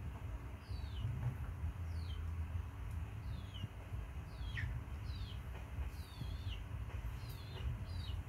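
High-pitched chirping calls, each a short call sliding downward, repeated about once a second, some wavering or doubled, over a steady low rumble.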